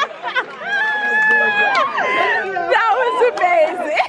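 Excited voices of a dinner crowd without words: a high call held for over a second that drops away about two seconds in, followed by a run of short rising-and-falling whoops and chatter.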